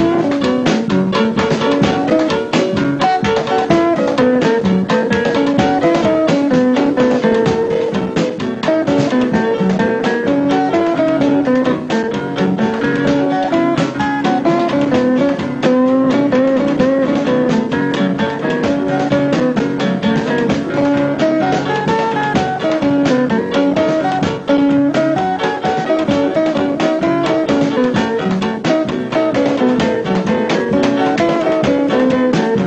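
Blues band music in an instrumental break: a guitar plays the lead line over a drum kit's steady beat, with no singing.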